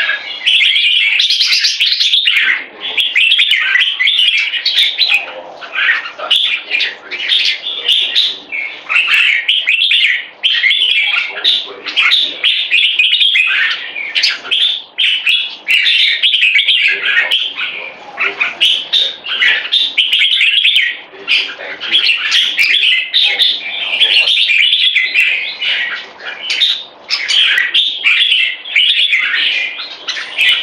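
Caged bulbul of red-whiskered bulbul stock singing almost nonstop in rapid, chirpy phrases with only brief pauses. This is the continuous 'marathon' song valued in bulbul singing competitions.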